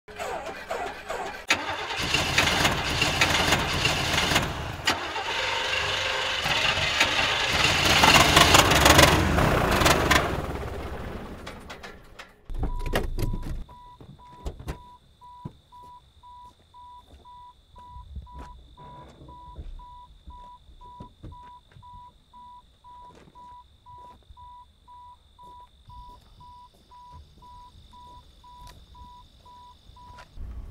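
A car runs loudly for about the first ten seconds, then fades away. After a thump about twelve seconds in, a car's door-open warning chime beeps steadily, about twice a second, with the driver's door standing open.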